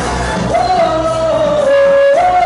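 Loud live pop music with a singer holding one long note that starts about half a second in and falls slightly in pitch.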